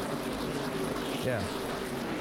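A pack of NASCAR Nationwide Series stock cars' V8 engines running at speed, a steady dense engine sound with many overlapping tones.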